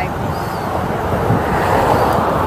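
Steady rushing outdoor noise with no clear tone, swelling slightly near the end.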